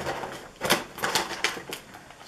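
Clear plastic packaging being handled, giving a run of sharp, irregular crackles.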